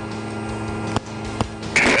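A propeller aircraft's engine and propeller make a steady drone, heard from inside the cabin, with two short clicks partway through. A man's voice starts near the end.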